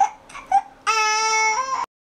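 Baby crying: a few short whimpers, then one long steady wail of about a second that steps up slightly in pitch near its end and cuts off suddenly.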